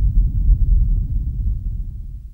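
A steady low rumble that fades away near the end.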